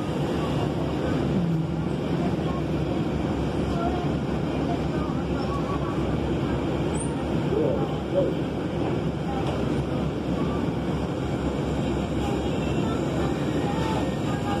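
Steady low rumble of a city transit bus idling while stopped, heard from inside the cabin, with faint passenger voices.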